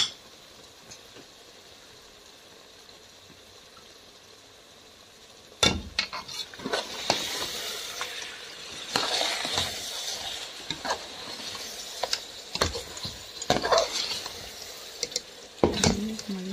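A metal spatula stirring mutton chops in thick masala gravy in a metal pot, with irregular scrapes and clinks against the pot over a sizzle as the gravy fries. The stirring starts about six seconds in, after a faint quiet stretch.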